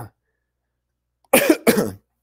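A man clearing his throat twice in quick succession, loud, about a second and a half in.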